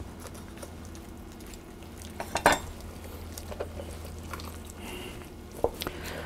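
Hands working a raw goose carcass on a wooden cutting board while prying at a stiff joint: quiet handling noise with a few sharp clicks, the loudest about two and a half seconds in. A steady low hum runs underneath.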